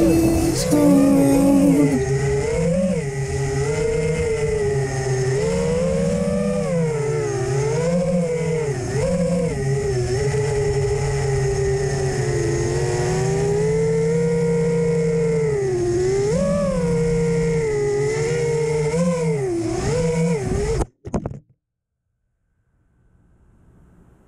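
An FPV freestyle quadcopter's motors and propellers whining, the pitch rising and falling with throttle through turns and punches. The sound cuts off suddenly near the end as the quad comes down and the motors stop.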